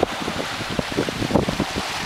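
Wind buffeting the microphone: irregular low thumps over a steady rushing hiss.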